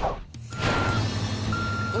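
Reversing alarm of a cartoon construction truck: two steady half-second beeps about a second apart, over vehicle rumble and background music.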